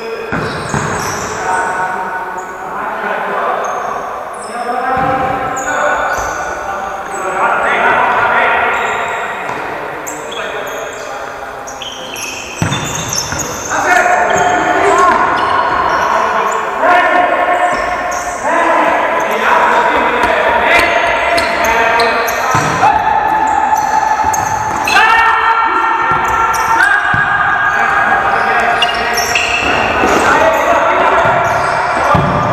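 An indoor football being kicked and bouncing on a sports hall floor, sharp knocks ringing in the reverberant hall, mixed with players' voices. From about halfway on, a louder layer of held tones steps in pitch every second or two.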